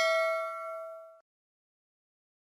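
Notification-bell 'ding' sound effect ringing out, its bright tone fading and then cutting off abruptly a little over a second in.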